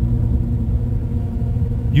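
Steady low rumble of a car driving, heard from inside the cabin: engine and road noise with a faint steady hum.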